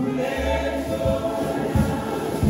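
A church congregation singing a gospel hymn together, a man's voice over the microphone leading, with a few short low thumps among the singing.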